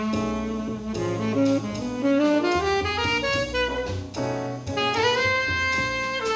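Live jazz quartet: tenor saxophone playing a melodic line over piano, upright bass and drum kit, sliding up into a long held note near the end.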